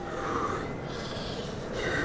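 A man's forceful breaths, a strong exhale followed by a hissing breath, as he braces under a pair of heavy dumbbells before pressing them.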